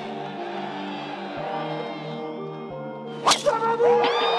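Background music, then near the end a single sharp crack of a driver's clubhead striking a golf ball off the tee on a full-power drive of about 194 mph ball speed.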